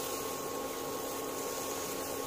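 Steady, even hiss with a few faint constant hum tones, like a small fan or appliance running; no distinct scraping or stirring sounds stand out.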